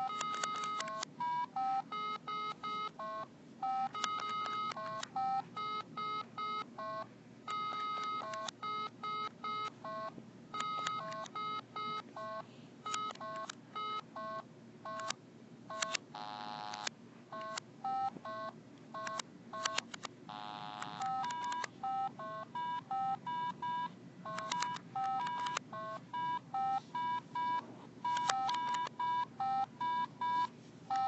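Simon Carabiner keychain memory game beeping nonstop in quick, irregular runs of short electronic tones at a few fixed pitches. A few longer, buzzier tones break in, one near the start, one about halfway and one about two-thirds through. The toy has gone haywire.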